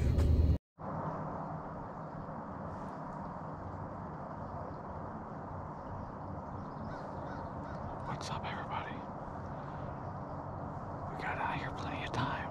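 A loud low rumble cuts off abruptly in the first second, giving way to a steady quiet woodland background. A crow caws a few times in the second half, once around the middle and again near the end.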